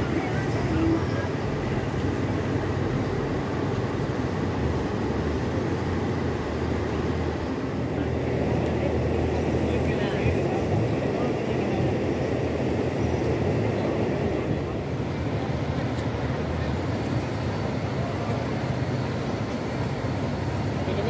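A river in flood rushing steadily past.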